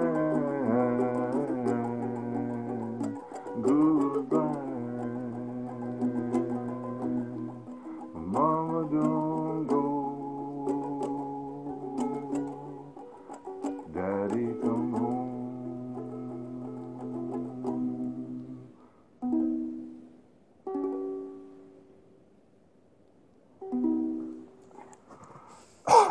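A man singing long, drawn-out lines to a strummed ukulele that is out of tune in the frost. About two-thirds of the way through, the singing stops, and a few last ukulele chords ring out separately with quiet gaps between them.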